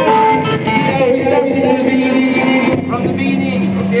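Loose playing on an electric keyboard and electric guitar: held single notes that step to a new pitch every second or so, with people talking over it.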